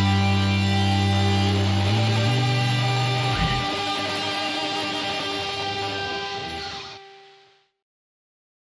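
The final chord of a punk rock cover, played on electric guitar and bass, ringing out. The low bass notes shift about two seconds in, then the chord fades and stops about seven seconds in.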